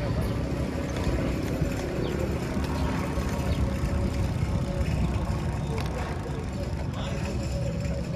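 Steady low wind-and-rolling rumble on the microphone of a bicycle-mounted camera riding down a city street, with a faint steady hum over it.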